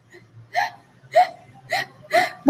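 A woman laughing in short breathy pulses, four of them about two a second.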